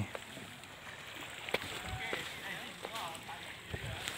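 Quiet outdoor ambience with faint, distant voices, a sharp click about a second and a half in, and a few soft low bumps from a handheld phone being carried while walking.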